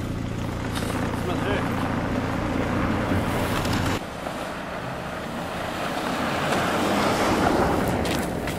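A towing car's engine running with a steady low hum, then, after an abrupt change about halfway, a rushing noise of tyres and snow that builds toward the end as the car comes closer.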